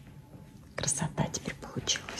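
Soft, whispered speech in short bursts, starting just under a second in.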